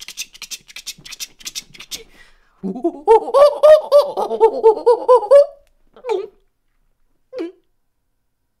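A man imitating a horse or unicorn with his voice. First comes a quick run of clicks from the mouth. Then there is a long warbling, whinny-like call whose pitch wobbles up and down, and a short laugh near the end.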